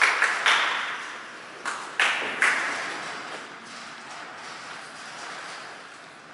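A few hand claps, in two short bunches of about three claps each, echoing in a large hall.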